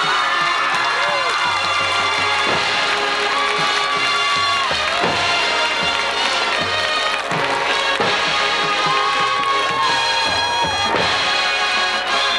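Marching band playing loudly: massed brass and woodwinds holding chords over the percussion, with heavy drum strokes falling every second or two.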